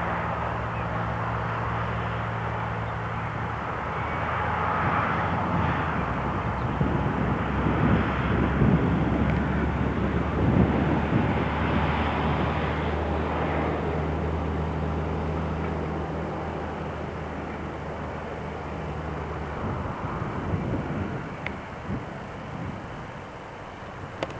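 Vehicle noise: a steady low engine hum, with a louder rushing swell that builds and fades in the middle.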